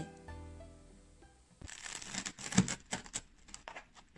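Background music with held notes fading out, then a cleaver cutting through a crisp-crusted pan-fried flatbread on a wooden board: a quick run of crackling crunches starting about one and a half seconds in.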